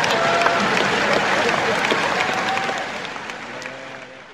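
The closing seconds of a rap track, after the beat has dropped out. A dense crackling wash of noise with brief faint tones fades down over the last second or so.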